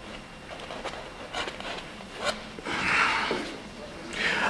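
Painting knife laying acrylic paint onto canvas: a few faint scrapes, the longest a soft scratchy drag about three seconds in.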